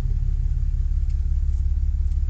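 Pickup truck engine idling, a steady low rumble heard from inside the cab.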